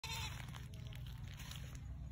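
Goat giving a short bleat right at the start, over a low steady rumble.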